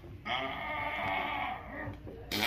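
A person's voice making one long, held, wordless sound that starts about a quarter second in, lasts about a second and a half, and dips in pitch at the end.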